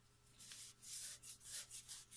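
Faint rustling and rubbing of a paper towel against a glass mason jar as the metal screw band is twisted down over it, in several short scuffs.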